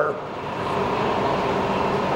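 Bridgeport Series II vertical mill running steadily with its spindle turning: an even machine hum with a faint steady whine.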